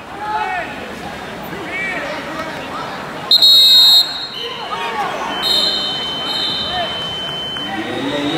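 Background voices in a large gym hall, cut by one loud, shrill, steady signal tone a little over three seconds in that lasts under a second, followed by a fainter, longer steady tone of about two seconds.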